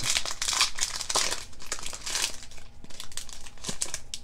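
Foil wrapper of a Yu-Gi-Oh booster pack crinkling as it is torn open by hand: an irregular crackle, dense at first and thinning out in the second half.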